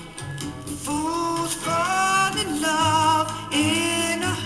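A 45 rpm vinyl single playing on a turntable: an R&B-pop record, with a singer's voice coming in over the backing about a second in.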